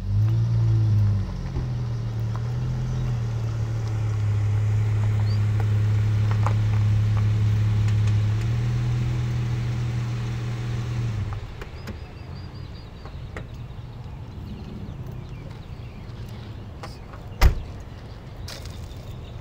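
Dodge Charger's engine running with a steady low hum as the car pulls up, cutting off about eleven seconds in. Near the end, one sharp knock of the car door opening.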